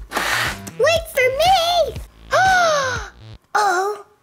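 A girl's high-pitched voice making several short, gliding, wordless exclamations over background music, opened by a brief rush of noise.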